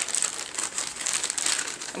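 A clear plastic bag crinkling as it is handled, in a quick run of crackles.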